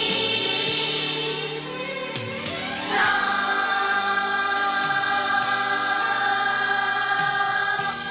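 Children's choir singing, swelling up about three seconds in to a long held chord that breaks off near the end.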